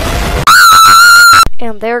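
The rumbling noise of an explosion, then a loud, held, high-pitched scream about a second long that cuts off sharply; a man starts speaking near the end.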